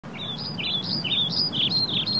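Small birds chirping in a quick series of short, stepped notes, about four a second, over a low steady background hum.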